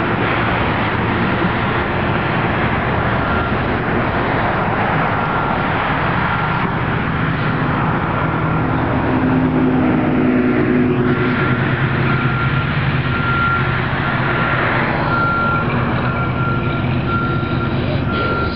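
A motor vehicle's engine running steadily, with a thin high whine that comes and goes.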